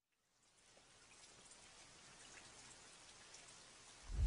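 Near silence, with a faint, even hiss fading in about half a second in and slowly growing.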